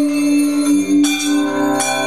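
Free-jazz improvisation by a quartet of soprano saxophone, electric guitar, upright bass and drums. A note is held steadily, and sharp ringing strikes land about a second in and again near the end.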